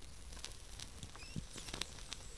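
Faint scattered clicks and crackle over a low hiss, with a couple of short high chirps about a second and a half in.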